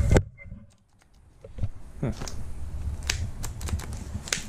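Scattered sharp clicks and handling knocks from a Craftsman cordless impact wrench being picked over and tried, with no motor running: the impact has died.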